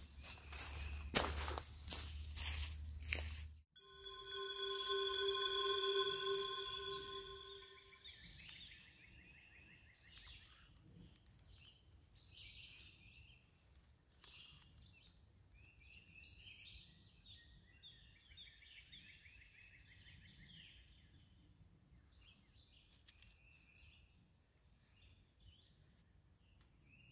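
Footsteps crunching through dry leaf litter for about the first three and a half seconds, cut off suddenly. Then a held tone of several pitches at once swells and fades over about four seconds, the loudest part, followed by songbirds chirping faintly for the rest.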